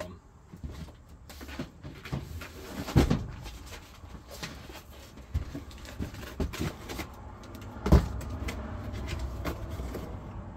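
Cardboard boxes of old books being rummaged through and shifted, with scattered small knocks and rustling and two louder thuds, about three seconds in and again near eight seconds.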